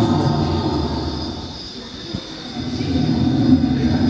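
Animatronic Tyrannosaurus rex's deep, low growl played by the exhibit, dipping halfway through and swelling again near the end.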